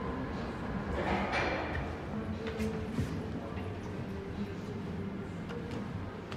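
Stainless steel sliding doors of a ThyssenKrupp passenger lift moving, with a few light clicks about halfway through, over a steady background hum.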